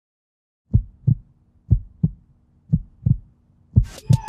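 Heartbeat sound effect: pairs of low thumps, lub-dub, about once a second, four pairs in all, over a faint low hum, starting after a moment of silence.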